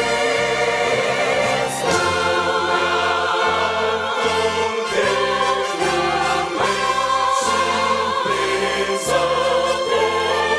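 A choir singing with instrumental backing. A bass line moves in even steps about twice a second.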